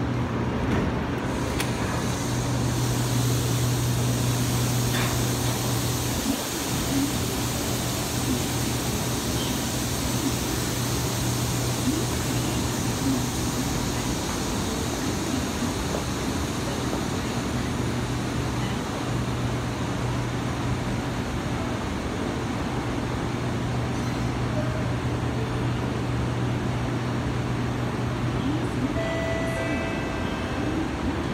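Steady hum and hiss inside a Kawasaki Heavy Industries C151 train standing at an underground platform with its doors open, its air-conditioning running. Just before the end, a few short tones sound: the start of the door-closing chime.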